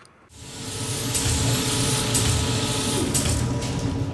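Sound-design effect for an animated transition: a mechanical whirring and hiss swells up over about the first second and then holds steady over a low hum, with a sudden louder hit at the very end.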